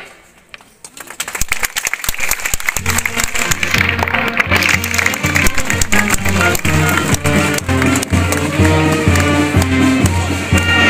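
Crowd applause starts about a second in, and about three seconds in band music strikes up under it: an instrumental piece with a steady, rhythmic bass line that keeps going.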